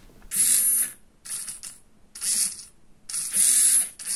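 Hobby RC servo of an antenna tracker turning in four short bursts, its gearbox whining each time, as it steps the mount round to point at the tracked position.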